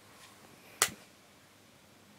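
A single sharp click a little under a second in, as the Nernst lamp's power is switched off and its light dies away.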